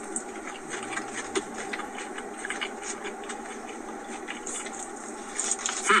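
A man chewing a mouthful of mac and cheese and brisket, with many small, irregular wet mouth clicks, over the steady hum of a car cabin.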